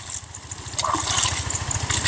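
A small engine runs steadily with an even low pulsing, while water sloshes and splashes as a bamboo basket of small fish is swished in shallow water.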